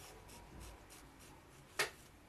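Faint rustling of yarn and fingers rubbing over crocheted fabric as a strand of yarn is drawn across it, with one brief, louder hiss near the end.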